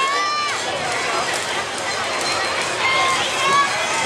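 High-pitched shouted calls of Awa Odori dancers, with one long held call at the start and shorter calls about three seconds in, over steady crowd and street noise.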